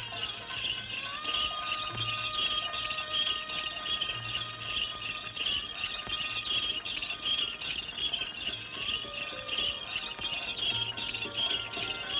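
Many small birds chirping densely and without pause, over faint held notes of background film music.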